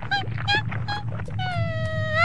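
Cartoon chihuahua's voice: three short yips, then a long wavering whine that starts about one and a half seconds in.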